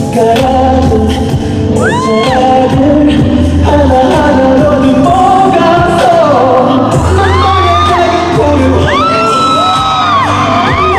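Live pop music played loud through the hall's sound system: a male voice singing over a backing track with heavy, sustained bass notes.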